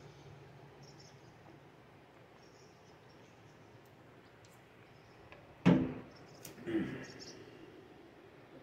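A man drinking from a can, quiet at first. A little past halfway there is a sudden loud knock, and about a second later a short voiced "mm" as he tastes the drink.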